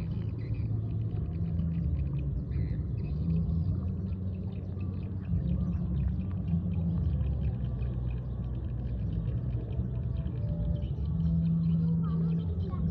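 A steady low rumble throughout, with faint small splashes and slurps from large catfish gulping at the water surface.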